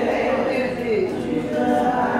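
A group of voices singing without accompaniment, in long held notes with a falling slide about a second in.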